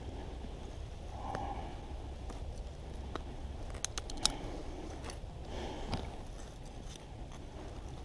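Faint outdoor background with a steady low rumble, soft rustles, and a few sharp clicks about four seconds in.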